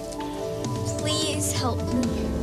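Rain falling under sustained, sombre background music, with a short falling whimper from a frightened girl about a second and a half in.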